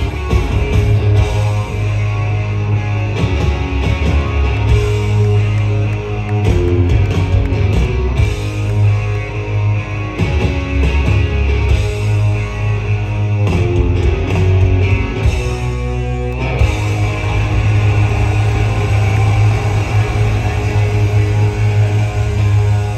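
Live hard-rock band playing at full volume, with electric guitar through Marshall amplifiers over a steady bass, loud and slightly distorted as heard from the front of the crowd. The playing shifts about three-quarters of the way through.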